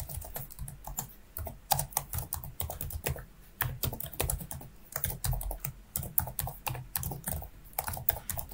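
Typing on a computer keyboard: an irregular run of key clicks, several a second, with brief pauses between bursts.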